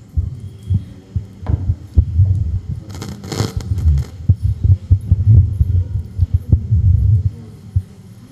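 Handling noise from a wired handheld microphone as it is passed and held: irregular low thumps, with a rubbing rustle about three seconds in.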